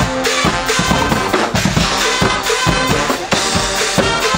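Guggenmusik band playing live: massed brass with trumpets, trombones and sousaphones over a drum kit with a steady bass-drum and snare beat.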